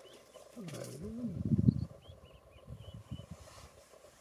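A person's short wordless voice sound, rising and falling in pitch, about a second in and loudest near two seconds, with faint high chirps in the background.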